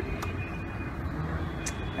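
Steady low rumble of outdoor background noise in a pause between speech, with a faint click just after the start and a short high tick near the end.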